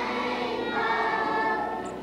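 A group of young children singing together, with a long held note in the middle.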